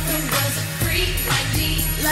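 Pop music with a steady beat and a deep bass line.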